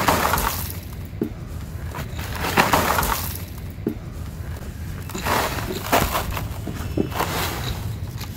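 Dry sand-and-cement block crumbling under the hands in a plastic tub. Gritty crunching and grains pouring down come in several bursts, at the start, about three seconds in, around five to six seconds and near the end, with small ticks of falling grit between.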